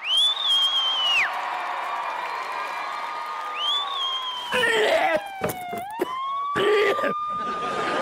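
Comic sound-effect whistle tones gliding up and down in pitch: two quick rising swoops that hold and then drop, over a long tone that slowly falls and then rises again. Short noisy bursts break in about five and seven seconds in.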